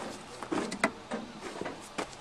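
A handful of short metallic clicks and knocks, about six, spread through the two seconds, from a long steel bar and cranking tool working against a seized engine. The crankshaft does not budge: it has seized from running without oil.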